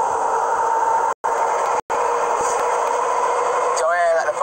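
Steady road and engine noise inside a Ford truck's cabin at highway speed, about 70 mph, with a constant hum. The sound cuts out completely twice for a split second, about a second in and again a little later.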